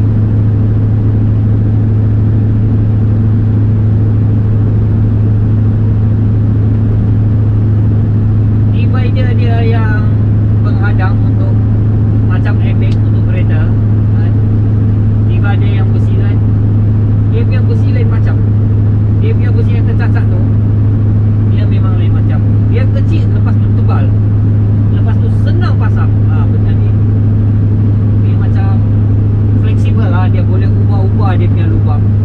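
Scania truck heard from inside the cab while cruising on the highway: its diesel engine and the road noise make a loud, steady low drone that does not change in pitch or level.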